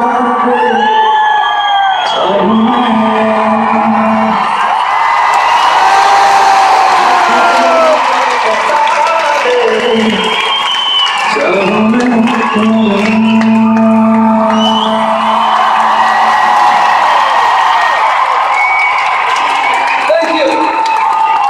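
Concert audience in a large hall cheering and whooping over live music, with a few long held low notes underneath.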